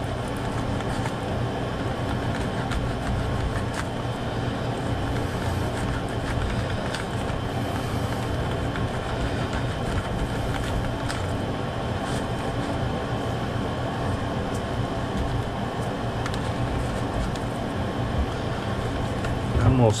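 Steady mechanical whir with a low hum that runs unchanged throughout: a running fan.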